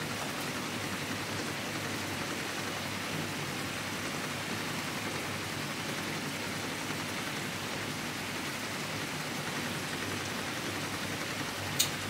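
Steady sizzling of food frying in hot pans on the stovetop, an even hiss with no breaks.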